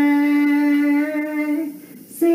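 A woman's voice singing one long held note of a hymn, stepping up a little in pitch near the end and then fading.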